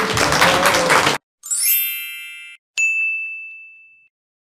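The preceding recording cuts off about a second in. A sparkling chime follows, then a click and a single bright ding that rings out and fades: the sound effects of an animated YouTube subscribe-button end screen.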